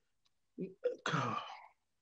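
A man clears his throat: a couple of short catches about half a second in, then a rougher, longer rasp that fades out.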